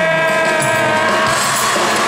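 Live band music from a pop concert, with drums and keyboards. A long held note fades out about two-thirds of the way through.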